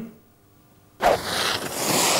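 About a second of near silence, then a sudden loud rushing hiss of skis sliding fast over snow close by.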